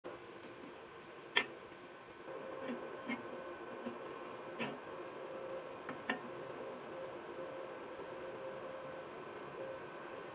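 Faint sharp clicks and light knocks of rusty steel rebar being handled and its ends set against each other, the sharpest click about a second and a half in, over a steady background hum.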